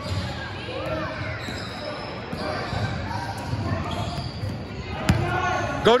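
Basketball bouncing on a gym floor in a series of low thuds, echoing in a large hall, with voices in the background. There is a sharp knock about five seconds in, and a shout of "Go" at the end.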